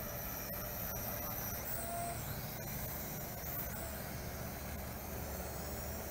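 Faint high whine of a small Eachine E33 toy quadcopter's motors as it hovers, its pitch bending briefly about two seconds in, over a steady low outdoor rumble.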